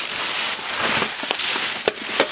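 Plastic packaging crinkling and rustling as a courier bag is handled and opened, with a few sharp crackles.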